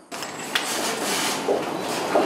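Steady rushing background noise of an office waiting area, with a single sharp click about half a second in.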